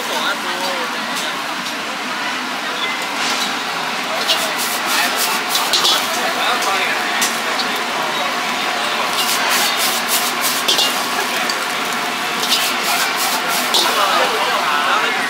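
Stir-frying rice noodles in a wok over a gas burner: a steady hiss from the burner and sizzle, with clusters of quick metal clinks as the ladle and spatula strike the wok and the seasoning pots.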